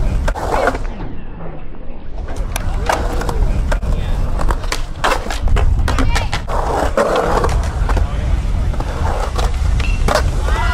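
Polyurethane skateboard wheels rolling on concrete with a low rumble, broken by many sharp clacks of the wooden deck and tail striking the ground. The rumble is loudest a little past the middle, around a bail in which the board skids away upside down.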